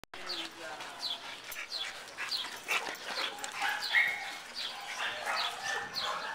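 A dog barking over and over in a steady rhythm, about three barks every two seconds.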